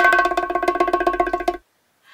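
Drum roll sound effect: a fast run of strokes over a ringing pitched tone, lasting about a second and a half and then stopping suddenly.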